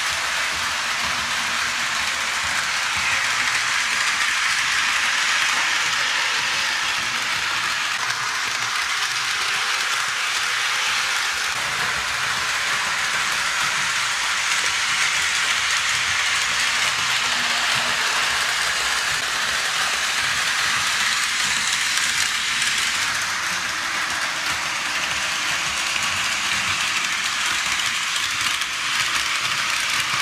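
HO scale model freight train, led by a Walthers EMD SD70ACe locomotive, running on plastic-roadbed sectional track laid on a wooden floor: a steady clicking rattle of wheels and motor that swells and eases several times as the train comes round the loop past the microphone.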